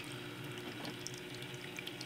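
Water running and splashing quietly in a tabletop copper water bell fountain, driven by its small pump. The flow assembly is turned to send more water up through the top of the bells.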